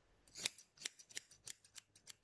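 Hairdressing scissors snipping through the ends of a lock of long straight hair held between the fingers: a quick run of about eight short snips, cutting the hair along a guideline for long layers.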